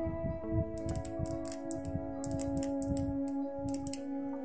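Irregular light clicks and taps from a handheld microphone being handled, with steady background music underneath.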